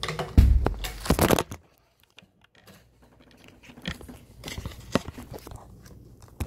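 Handling noise from the phone that is recording: crackling, rubbing and knocking against its microphone for about a second and a half, then an almost silent gap. Scattered small rustles and clicks follow as it is moved again.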